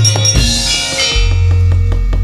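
Javanese gamelan playing: a drum stroke whose pitch bends downward at the start, then a bright metallic crash that rings off over about a second, and a deep gong hum that swells about a second in and holds.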